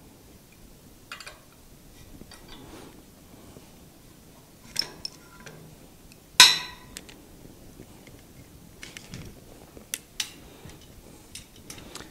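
Scattered metallic clinks and clanks of a wrench and steel parts being handled. The loudest is a sharp ringing clink about six seconds in.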